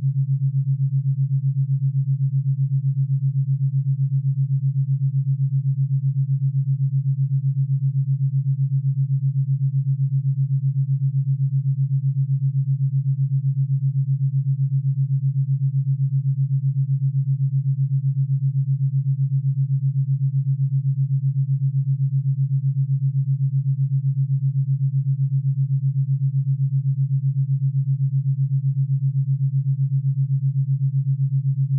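Theta binaural beat: a steady low pure sine tone with a fast, even pulse at 7.83 beats a second, the Schumann resonance rate.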